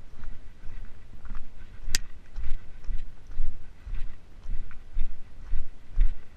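Footsteps of a hiker walking on a trail, landing about twice a second with light crunches and low thuds. A single sharp click comes about two seconds in.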